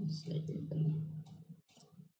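A man's low voice, drawn out and murmured for about a second and a half, with computer mouse clicks.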